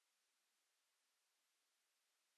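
Near silence: only a faint, even hiss of the recording's noise floor.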